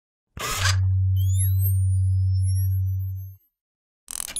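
Synthesized logo-reveal sound effect: a sudden noisy burst about a third of a second in, then a deep steady hum under thin, high electronic sweeps that rise, with one sweep falling. It fades out a little over half a second before the end.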